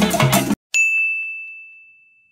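Latin-style background music with percussion stops abruptly about half a second in; a moment later a single bright, bell-like ding sound effect rings out and fades away over about a second and a half.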